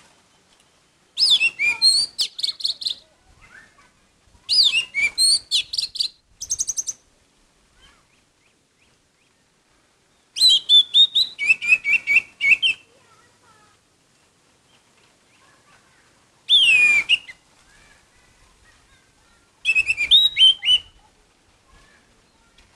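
Orange-headed thrush singing in short phrases of rapid, varied whistles and trills, each a second or two long, separated by pauses of a few seconds.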